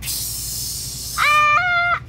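A hissing rush of noise that fades, then a little over a second in a child's loud, high-pitched held cry that steps up in pitch and breaks off.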